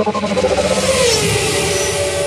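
Car engine sound with a loud rushing noise, the engine note falling in pitch about halfway through.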